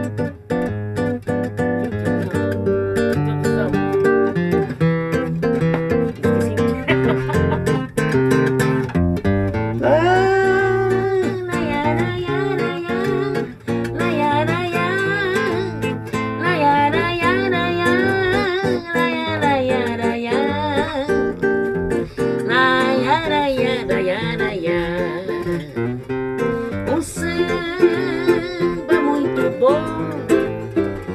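Acoustic guitar playing a samba, strummed and picked chords. About ten seconds in, a sliding, wavering melody line comes in over the guitar.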